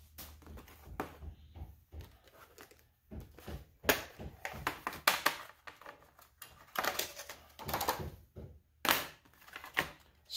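Hard plastic airbrush case and its packaging being handled and opened on a table: irregular plastic clicks and knocks, a few of them sharper near the middle and toward the end.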